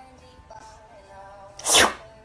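A cat sneezes once, a short sharp burst near the end, over soft background music.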